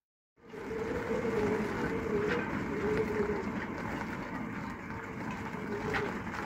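Wind rushing over the microphone outdoors, starting about half a second in, with a faint wavering hum beneath it.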